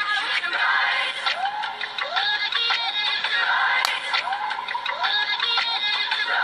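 Background pop music with singing, a short rising vocal figure repeating over and over.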